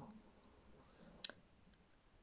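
Near silence, broken by one short, sharp click just over a second in.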